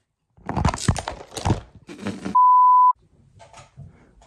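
Rustling and knocking of the phone being handled with the lens covered, then a loud, steady, single-pitched beep for about half a second, a bleep tone cut in at a video edit. Faint clicks follow.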